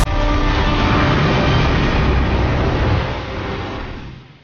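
A loud, steady rushing rumble of a dramatic sound effect for a magical blast and flight, fading out over the last second.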